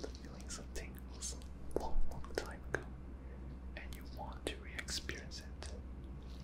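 Close-miked ASMR whispering: soft, breathy whispered sounds with sharp lip and mouth clicks, over a steady low hum.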